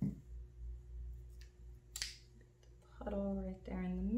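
A paint cup set down on the work table with a knock, a light click about two seconds in, then a woman humming a couple of short notes near the end, the last one rising.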